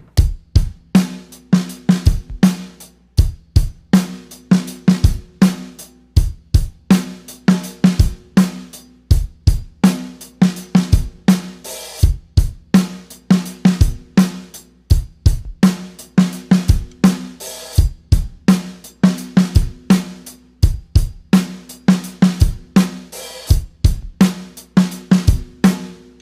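Drum kit playing a steady 16-beat groove: a continuous run of hi-hat strokes, snare hits placed on the off-beat sixteenths, and bass drum kicks.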